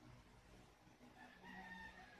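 Near silence over a steady low hum, with a faint, drawn-out call about halfway through that falls slightly in pitch.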